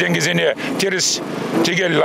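A man speaking in an interview: speech only.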